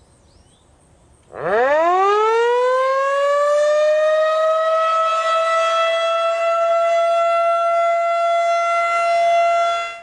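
Outdoor tornado warning siren starting up about a second in. Its wail rises in pitch over a couple of seconds, then holds one steady tone with slight swells in loudness as the horn turns, and dies away near the end. It is the outdoor alert for a tornado warning, the signal to seek shelter.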